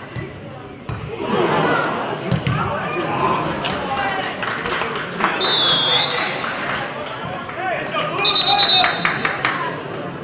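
Players' voices shouting and calling out across a football pitch, with two short referee's whistle blasts, about five and a half and eight seconds in.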